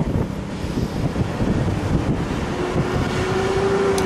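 Wind rumbling on the microphone, a dense, uneven low rumble. A single steady low hum joins in near the end.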